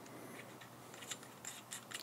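Faint, scattered small clicks and scrapes of a metal part being threaded by hand: a scope mount's throw lever being screwed into its threaded hole in the mount.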